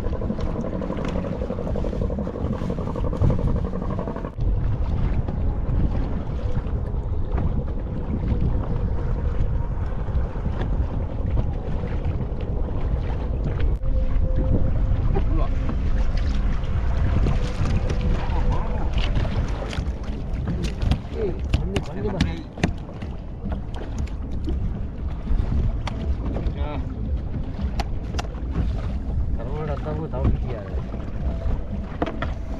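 Wind buffeting the microphone on a small open fishing boat at sea, a dense steady rumble, with water splashing about the hull. A faint steady hum comes in at the start and again about halfway through.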